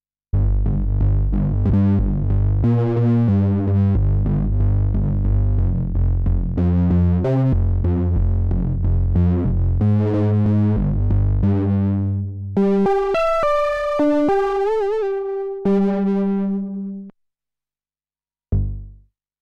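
Korg monologue monophonic analogue synthesizer playing a patch: a busy, rhythmic run of deep bass notes, then after about twelve seconds higher held notes with vibrato, stopping shortly before the end.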